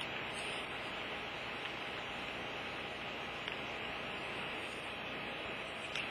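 Steady, even hiss of recording background noise, with a couple of faint ticks along the way.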